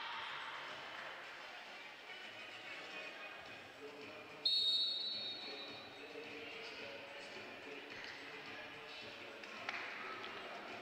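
Faint, indistinct voices over sports-hall ambience. About halfway through comes a sudden high-pitched tone that fades away over a second or so.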